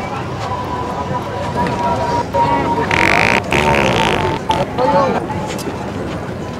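A prank wet fart sound, loud and lasting about a second and a half, starting about three seconds in, over the chatter of people passing by.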